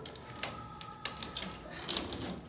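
Irregular light clicks and rattles of a metal wire-mesh stretcher basket as a person climbs onto it and settles down in it, about a dozen ticks spread across two seconds.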